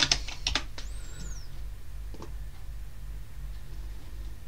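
Computer keyboard typing: a quick run of keystrokes in the first second, then a single click about two seconds in, over a steady low hum.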